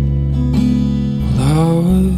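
Music: acoustic guitar playing over a deep, steady bass line, with a note that slides upward about one and a half seconds in.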